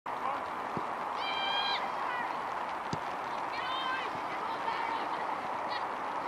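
Youth football match on the pitch: two long shouted calls from players or touchline about one and three and a half seconds in, a shorter shout near the end, and two short knocks of the ball being kicked, over a steady outdoor hiss.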